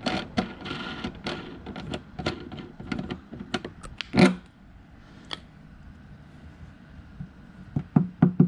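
Irregular small clicks and taps of a crossbar glue-pull dent puller being handled as its twist knob is turned back to release the pull on the glue tab. There is one louder knock about four seconds in, then fainter handling noise.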